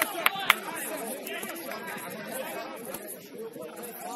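Several people talking at once, overlapping voices on and beside a football pitch, with two or three sharp knocks in the first half second.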